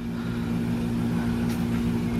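A steady low mechanical hum with a constant pitch.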